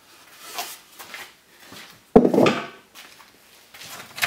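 Wooden inner box of a hive-frame assembly jig lifted off the frames, wood rubbing and scraping, with one loud wooden knock about two seconds in.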